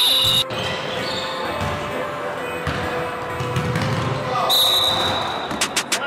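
Live basketball game sounds in a gym: the ball bouncing on the hardwood court, short high sneaker squeaks, and players calling out.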